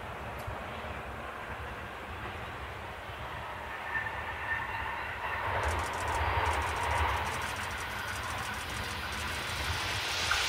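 A Tobu 6050-series electric train approaching on the track from a distance. Its low rumble and rail noise grow gradually louder, with faint thin whining tones over the rumble in the second half.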